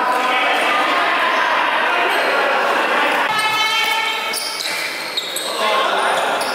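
Basketball bounced on a wooden gym floor amid players' voices and calls in the hall.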